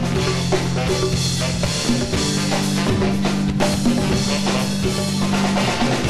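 Live band playing: a drum kit keeps the beat under long, held low notes that shift pitch about two seconds in, with trumpets and saxophone on stage.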